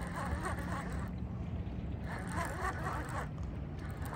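Steady low rumble of wind and a flowing river current on the microphone, with bursts of faint wavering chatter above it.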